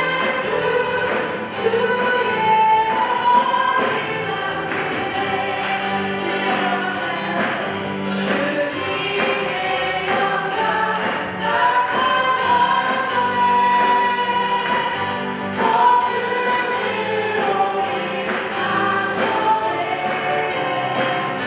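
A live Korean worship song sung by female vocalists with many voices joining in, over keyboard and band accompaniment with a steady beat.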